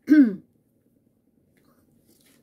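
A woman's single short vocal sound falling in pitch, like a clearing of the throat or a brief hum, at the very start; then quiet room tone.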